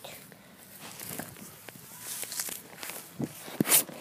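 Footsteps: a run of irregular steps and scuffs, with a louder scuffing noise near the end.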